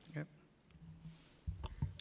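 Handling noise on a desk microphone: a low thump and a couple of sharp clicks near the end, after a brief spoken "yep".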